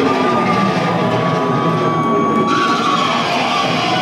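Live amplified band music in a hall: one long held note runs over the room's noise, and about halfway through a brighter hiss joins it.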